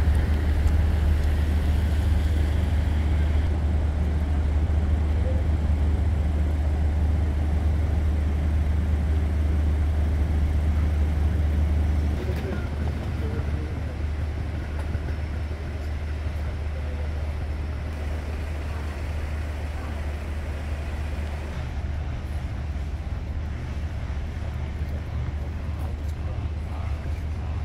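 Outdoor city street ambience: a steady low rumble with faint voices of people around, louder in the first half and dropping noticeably about twelve seconds in.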